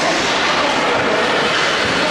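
Steady, loud wash of ice-arena noise during play, with no single sound standing out.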